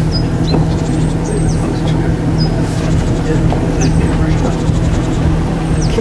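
Canal cruiser's inboard engine running steadily at low speed, a constant low hum, with a few short high chirps above it.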